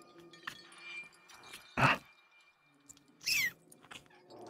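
Close-miked mouth sounds of a voice actor acting out a vampire biting and drinking blood: three separate wet noises, the loudest about two seconds in and the last one higher with a falling pitch.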